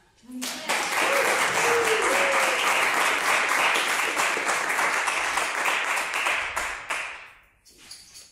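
Audience applause at the end of a live song: dense clapping starts about half a second in, holds steady, and dies away near the end.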